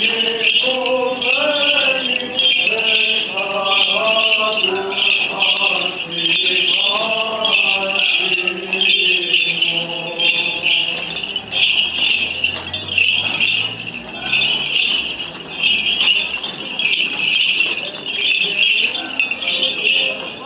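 Small metal bells jingling in a steady rhythm, about one shake a second, with a voice chanting a Byzantine Orthodox hymn over them for roughly the first half.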